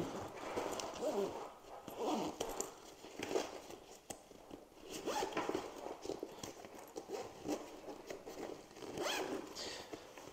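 Zipper on a fabric travel backpack being pulled shut in a series of short pulls.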